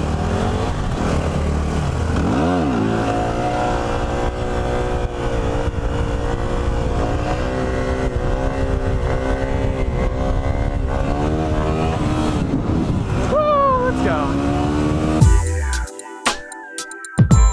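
Yamaha WR250R single-cylinder dual-sport engine revving up as it pulls away from a stop, then running on at speed under wind rush on the mount-mounted microphone. The sound changes abruptly about a second before the end.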